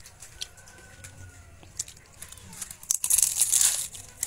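A bite into a crisp fried bean-sprout spring roll (lumpiang toge): a loud, crackly crunch of the fried wrapper about three seconds in, after a few faint mouth and handling clicks.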